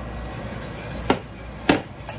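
A wire whisk working flour slurry into simmering broth in a stainless steel saucepan, with two sharp clinks of kitchenware, about a second in and again a little over half a second later, the second louder.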